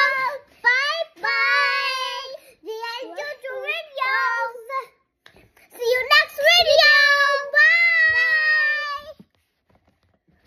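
Children singing in high voices, phrases with long held notes, with a short break about five seconds in and stopping near the end.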